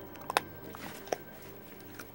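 Dog gnawing a chew: a few sharp crunching clicks of teeth on the chew, the loudest about a third of a second in and a smaller one about a second in.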